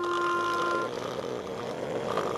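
Cartoon soundtrack effects: a short steady tone that cuts off about a second in, followed by an even hiss.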